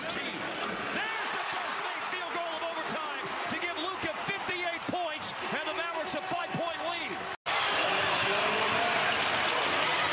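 Basketball arena crowd noise during live play, with a ball being dribbled on the hardwood court. About seven and a half seconds in, the sound drops out for an instant and comes back louder.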